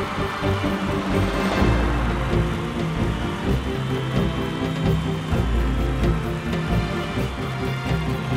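Background music with a steady beat and bass.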